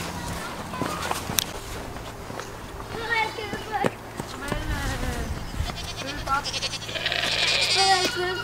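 Goats bleating a few times, with a long, wavering bleat near the end.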